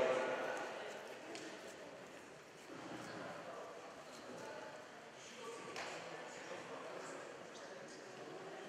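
Indistinct voices echoing in a large sports hall, with a couple of light knocks.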